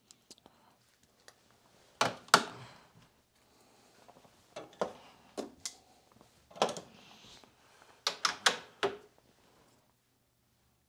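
Irregular clicks and knocks of a screwdriver and a plastic plug being handled as a replacement plug end is fitted to a vacuum's power cord, coming in small clusters with short gaps between.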